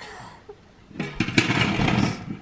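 A floor vent register being pried up and lifted out of its metal floor duct, rattling and scraping for about a second from roughly one second in.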